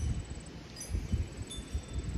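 Breeze buffeting the microphone as an uneven low rumble, with a few faint, short high chiming tones.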